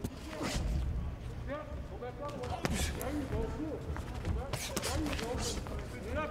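Boxing punches landing on gloves and bodies, several sharp hits scattered through the moment, with faint shouting voices behind them.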